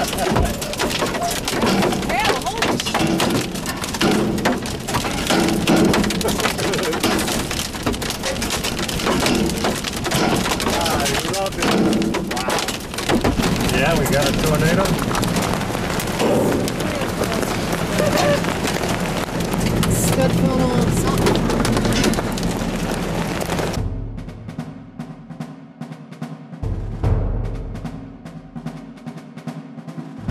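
Rain and hail pelting an armored storm-chasing vehicle amid strong wind noise, with many sharp hits. The storm noise cuts off suddenly about 24 s in, and quieter low music tones follow.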